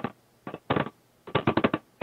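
Crackling clicks coming through a participant's phone line into a web conference, in three short bursts with dead gaps between them; the last and longest comes about a second and a half in. It is the fault on his phone connection that makes his audio crackle.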